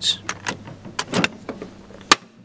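Steel military surplus ammo can being shut: a few sharp metal clicks and knocks from the lid and latch hardware, the loudest right at the start and just past a second in.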